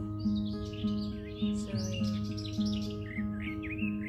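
Acoustic guitar playing a steady, repeating accompaniment, with small birds chirping and singing over it.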